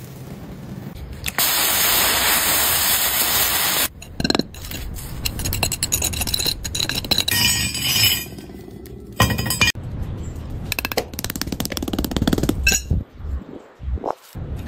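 A steady hiss for a couple of seconds as molten metal is poured into a sand mold, then sharp clinks and scrapes as the rough cast metal padlock is handled on a concrete floor.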